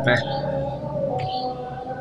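A steady background drone of several held tones, with a short spoken "nah" at the start.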